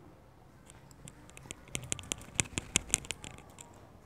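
A metal tube cutting a disc out of modelling clay on a wooden tabletop: a quick run of small sharp clicks and taps, starting about a second and a half in and lasting under two seconds.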